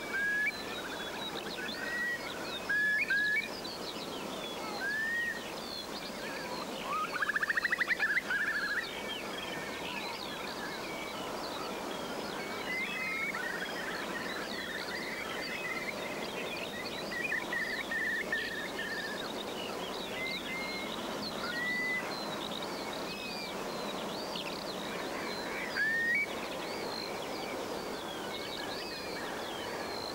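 Outdoor birdsong: many birds chirping and calling over a steady background hiss, with a louder, rapid buzzy trill about seven seconds in.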